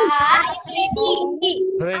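Children's voices answering aloud over a video call, speaking the English words of the exercise.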